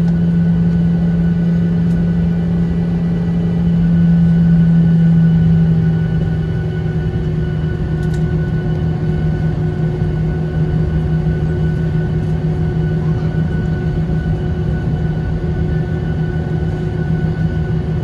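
Boeing 737-800 engines heard from inside the cabin while the airliner taxis: a steady loud hum with a low droning tone. The hum swells slightly about four seconds in and eases off about six seconds in.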